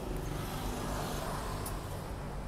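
Steady rumble of motor-vehicle engines and road traffic, an even low drone with no sudden events.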